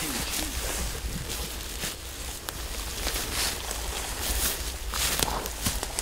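Footsteps and rustling in forest leaves and undergrowth, in irregular scuffs and crackles over a steady low rumble.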